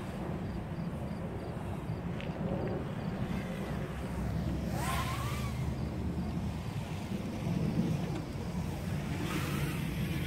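KingKong 110GT brushless micro racing quadcopter buzzing at a distance, its motor pitch rising once about halfway through, over steady wind and background rumble.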